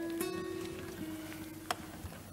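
A few acoustic guitar notes plucked one after another and left to ring, slowly fading, with a sharp click near the end.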